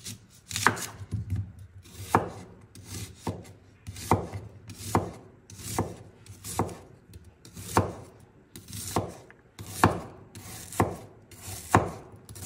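Kitchen knife slicing a raw onion on a bamboo cutting board: a steady rhythm of crisp cuts, each ending in a knock of the blade on the board, about one to two a second.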